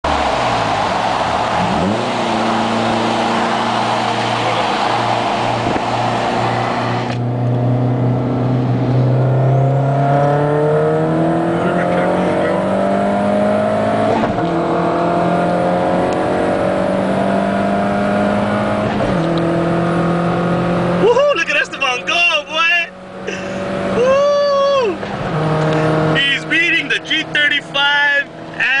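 A car engine accelerating hard at full throttle in a street race. Its pitch climbs steadily through each gear and drops back at each upshift, about halfway through and again later. Whooping and shouting come in over it in the last few seconds.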